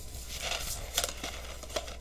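A cardboard macaroni box being handled and opened by hand: rustling and crinkling, with a few sharp clicks.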